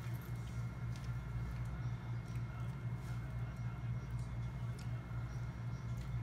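Faint crunching of dried crickets being chewed, a few small crackles scattered through, over a steady low hum in the room.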